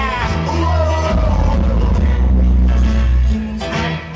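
Live hip-hop music through a festival sound system, heard from the crowd: a deep, sustained bass line with a sung vocal melody over it. The bass drops out shortly before the end.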